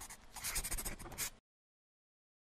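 Scratchy pen-on-paper writing sound effect made of quick, rapid strokes. It ends about one and a half seconds in.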